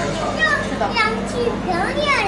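Children's voices chattering and calling out, several high voices overlapping with no one voice standing out.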